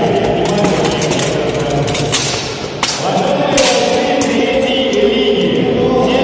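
Armoured combat: weapons and shields striking steel plate armour in a string of sharp metallic clashes, the loudest about two and three and a half seconds in. Sustained choir-like singing runs underneath.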